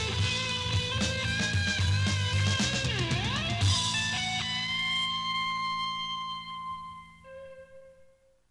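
Rock band ending a song: drums, bass and electric guitar play until about halfway through, then the drums stop and a final chord rings on and fades away by the end.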